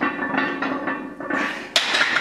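Barbell and iron weight plates clanking during a bench press, with one sharp metallic clink near the end that rings on briefly.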